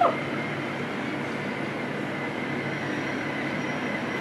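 Steady road and traffic noise of a vehicle moving along a city street, with a faint high tone for about a second near the end.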